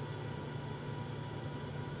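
Steady low fan hum with a few faint, thin whine tones above it, unchanging throughout.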